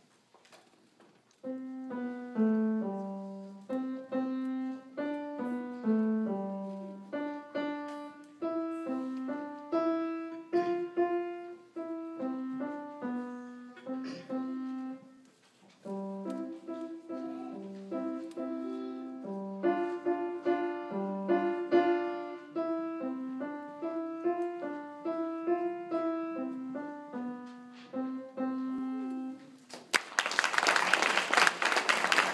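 Grand piano played solo by a young pupil: a simple melody of mostly single notes in the middle register. It starts about a second and a half in, breaks off briefly about halfway, then carries on until just before the end.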